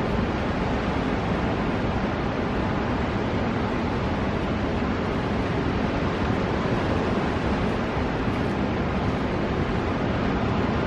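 Steady rushing noise of ocean surf breaking, mixed with wind.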